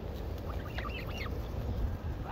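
Canada geese giving a few faint, short calls around the middle, over a steady low rumble.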